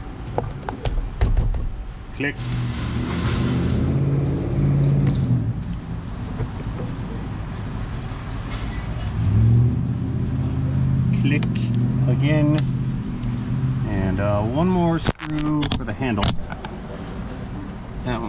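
Plastic door-panel clips clicking as a car's interior door trim panel is pressed back onto the door, with sharp clicks scattered through. Under them, a car engine runs in two long stretches.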